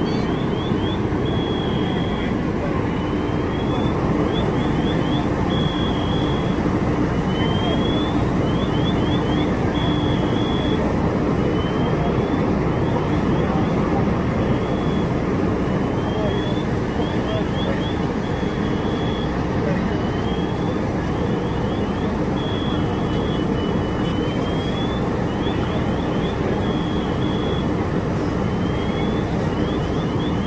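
Fire apparatus engine running steadily and loudly. Over it, an electronic chirping pattern repeats about every three and a half seconds: a rising sweep, a quick run of short chirps, then two short beeps.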